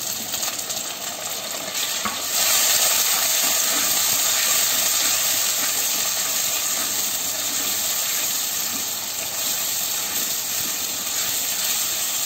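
Chopped tomato, onion and curry leaves sizzling in hot oil in a clay pot while being stirred with a wooden spatula. The sizzle grows louder about two seconds in and then stays steady.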